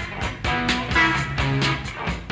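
A live blues-rock band playing: electric guitars and bass over drums keeping a steady beat.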